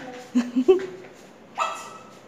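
Dog giving two short, low barks about a third and two-thirds of a second in.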